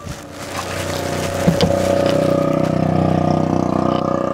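A motor vehicle's engine running steadily, heard from inside a car. Its hum swells over the first second and then holds, with a single click about a second and a half in.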